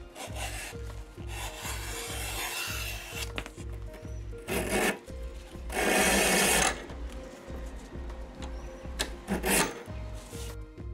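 A leather strap drawn through a wooden strap cutter, then through a Craftool leather splitter whose blade shaves the strap thinner, a loud scrape lasting about a second in the middle and shorter scrapes near the end.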